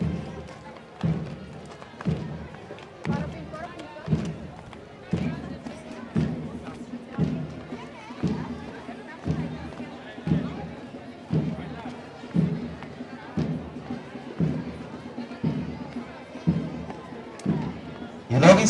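A bass drum beating a steady march pulse, about one beat a second, under faint crowd chatter.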